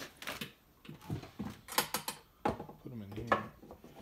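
Irregular sharp clicks and knocks of objects being handled and moved about, with a short low hum of a voice about three seconds in.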